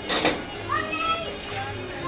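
Young children's voices and chatter, with a short noisy burst right at the start.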